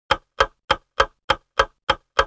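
Clock-style ticking: sharp, evenly spaced ticks about three a second, seven in a row, with silence between them.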